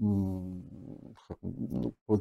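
A man's low, drawn-out hesitation sound, a held 'eh' at a steady pitch for about half a second that then trails off, followed by a few short mumbled syllables.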